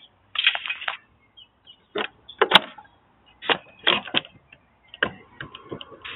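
Irregular sharp clicks and short clatters of hard objects, in uneven clusters with pauses between them.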